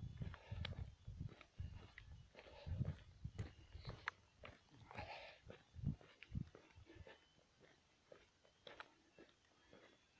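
Faint footsteps and rustling of a handheld phone as someone walks, soft irregular steps about two a second that die away after about six seconds.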